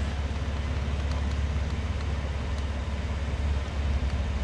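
A car engine idling, a steady low hum with a fast even pulse.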